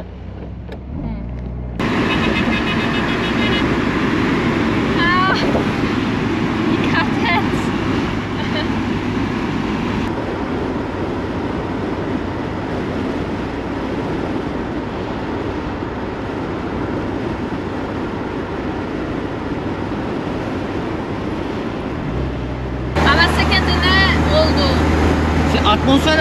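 Cabin noise of an old Tofaş car on the move with the windows open: a steady rush of wind and road noise over the engine's hum.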